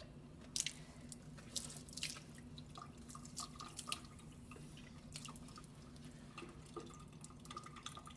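Water from a lab sink faucet splashing and dripping as a paper coffee filter is wetted under the stream: irregular faint splashes, most of them in the first half, over a steady low hum.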